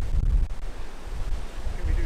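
Wind buffeting the microphone, a low uneven rumble that eases a little about a second in.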